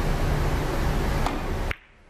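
Steady hiss with a low hum underneath, cutting off suddenly near the end; a faint click about a second in.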